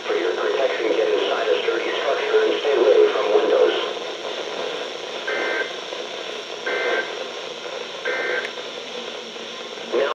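A weather radio's speaker carries the end of an automated voice reading the warning, then three short bursts of two-tone data about 1.4 s apart: the Emergency Alert System end-of-message code that closes the alert.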